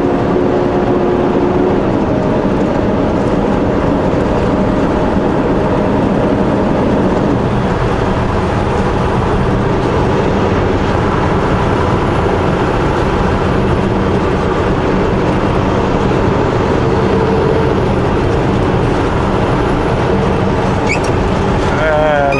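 A semi truck's engine drones steadily under continuous road and tyre noise while the truck cruises on the highway. The engine note shifts a little about two seconds in.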